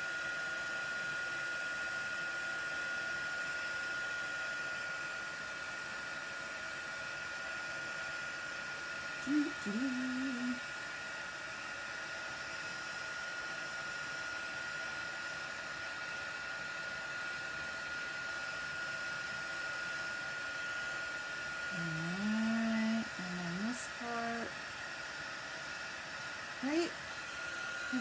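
Stampin' Up! embossing heat tool blowing hot air steadily, with a thin high whine over the rush of air, melting white embossing powder on cardstock.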